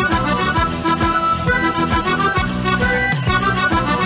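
Two accordions playing the instrumental introduction of a tarantella, with a steady beat underneath.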